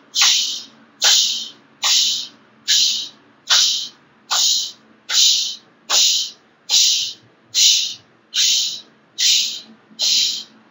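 Breath of fire: forceful exhalations through the mouth, pumped from the belly, each a sharp "sh" hiss that fades quickly. They repeat evenly a little more than once a second, like a choo-choo train.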